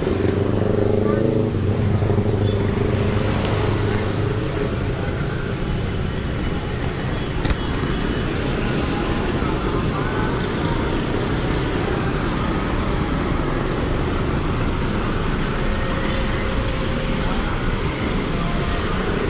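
Busy street traffic: motor scooters and cars running close by, with a steady low engine hum for the first few seconds and a single sharp click about seven and a half seconds in.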